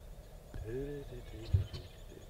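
Faint bird chirps over a quiet outdoor background. A short low hum-like murmur comes about half a second in, and a single dull thump follows just past the middle.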